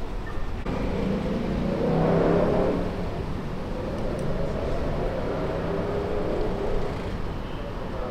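Street traffic: a vehicle passing, its engine and tyre sound swelling to loudest about two seconds in and then fading, with another vehicle going by later.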